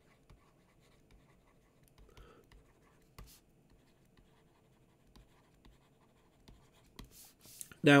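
Faint tapping and scratching of a stylus handwriting on a tablet screen, with one sharper tap about three seconds in.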